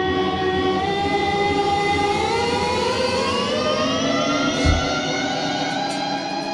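Live band playing a sustained, drone-like passage of held chord tones over a low rumble. From about two seconds in, several of the tones glide slowly upward together, and there is a single low thump near the end.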